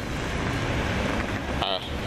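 Steady low outdoor rumble, like traffic and wind on a handheld microphone. A man's voice starts again near the end.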